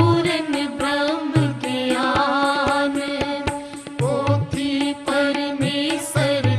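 Sikh devotional hymn (shabad kirtan): a voice singing a flowing melodic line over regular drum strokes.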